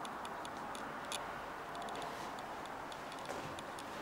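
Handling noise of a handheld camera as it is moved: a steady hiss with many light, irregular clicks.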